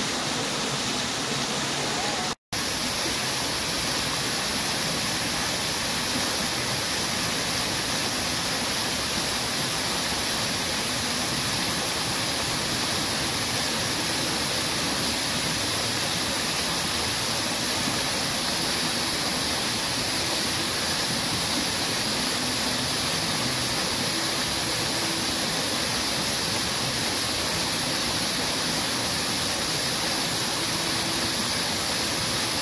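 Garden fountain jets shooting up and splashing down into their pools, a steady rushing of falling water. The sound cuts out for an instant about two seconds in.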